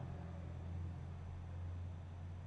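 Steady low hum with faint hiss: background noise from an open microphone on a video call.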